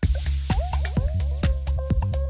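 Minimal techno with a steady kick drum and ticking percussion. Over the first second a hiss fades out, and a quick run of short, downward-sliding synth blips that sound like drips follows.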